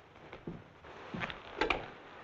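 A few short knocks and clicks, the loudest pair about one and a half seconds in, over a faint steady hiss.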